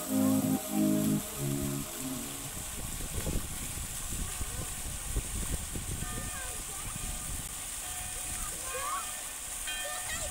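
Background music fades out in the first couple of seconds. It leaves the steady splashing of a fountain's water jets, with faint voices in the background.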